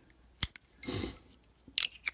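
Metal lighter insert and case being handled: a sharp click about half a second in and a few quick metallic clicks near the end, with a short soft breathy hiss between them.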